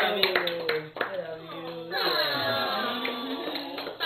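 A group of people singing a birthday song together, with hand clapping that is sharpest in the first second.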